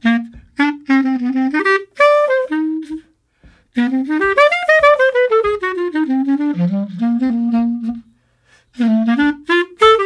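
Solo jazz clarinet playing a swing phrase. It opens with short separate notes, pauses briefly about three seconds in, then plays a long falling run. It breaks off again near the end before the phrase picks up.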